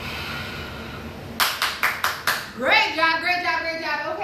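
Five quick handclaps about a second and a half in, followed by a woman's voice calling out in a high, sliding pitch.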